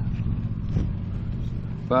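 A motor vehicle's engine running with a low, steady rumble.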